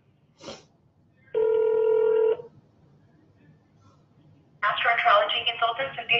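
A single steady telephone line tone lasting about a second, played through a smartphone on speakerphone while the call is being transferred. Over a second before the end, a person's voice starts on the line, thin through the phone's speaker.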